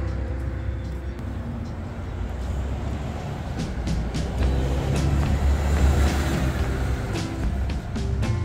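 Background music over the low rumble of a road vehicle passing, swelling about halfway through and easing off near the end.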